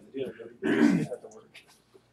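A person clears their throat once, a short rough burst about halfway through, with low talk around it.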